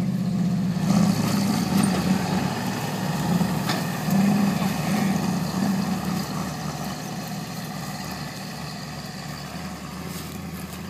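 A GMC pickup and an early Ford Bronco running hard under load as the Bronco tows the pickup, in two-wheel drive, across dry dirt and grass, its rear tires spinning. The engine sound fades gradually over the last few seconds as the vehicles pull away.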